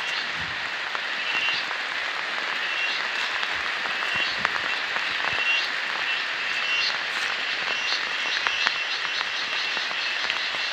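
Dense chorus of calling animals, frogs among them: a steady high hiss with short chirps repeating throughout, and a few faint ticks.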